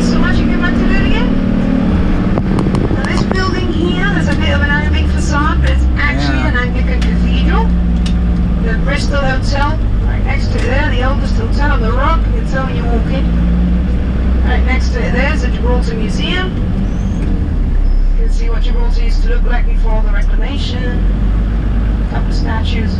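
Minibus engine running and road noise heard from inside the cabin while driving, a steady low hum that shifts in pitch a few times, under indistinct talking.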